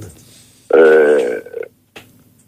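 Speech only: a man's voice holding one drawn-out hesitation sound, an 'eh' of under a second, about a third of the way in.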